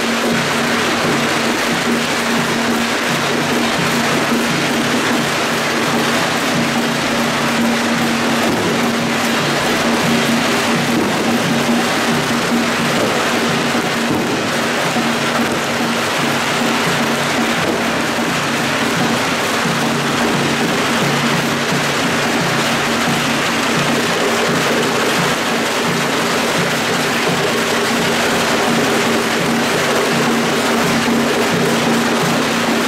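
Firecrackers crackling in a dense, unbroken stream, over the music of a temple procession troupe's gongs and drums with a steady ringing tone.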